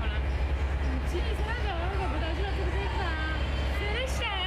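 A girl talking in short phrases over a steady low rumble.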